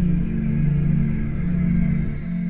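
Electronic music played live on synthesizer: a sustained low synth chord held steadily over a dense low bass, with no singing.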